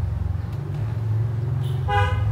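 A steady low engine rumble from a vehicle, with an even pulse, and a short horn toot near the end.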